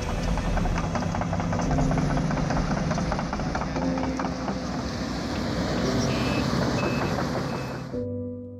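Heavy construction machinery running on a building site, a steady engine rumble and clatter, with a reversing alarm beeping a few times near the end.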